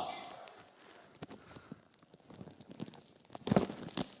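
Scissors cutting and crinkling clear plastic tape wrapped around a seated person: scattered faint clicks and rustles, then a louder crinkling snip about three and a half seconds in.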